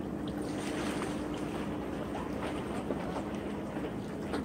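Steady low hum of a distant boat engine over outdoor wind and water noise by the sea.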